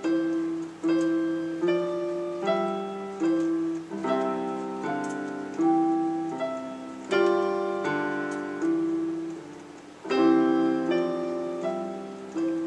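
Portable digital keyboard on a piano voice, played four hands as a duet: a lullaby of sustained chords under a melody. A new note or chord sounds about every 0.8 seconds, each fading until the next, with louder chords about 4, 7 and 10 seconds in.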